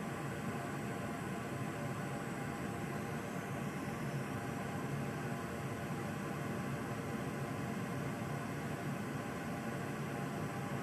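Steady, unchanging hiss with a low hum underneath.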